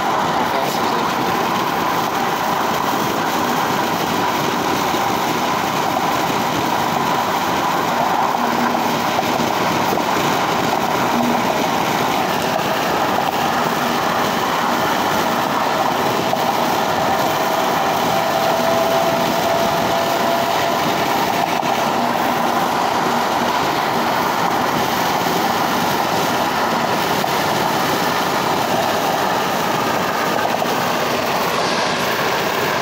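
Steady road noise inside a moving car's cabin on a freeway: tyres on the pavement and the hum of wind and traffic, even and unbroken.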